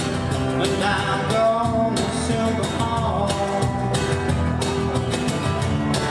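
Live band playing a song: acoustic and electric guitars with bass over a steady beat.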